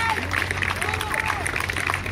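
Many people clapping their hands, with voices mixed in.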